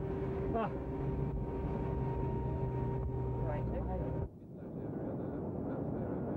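Steady hum of a running aircraft engine with a constant whine held on a few fixed tones, with brief voices over it. It cuts off abruptly about four seconds in, giving way to a rougher steady rumble without the whine.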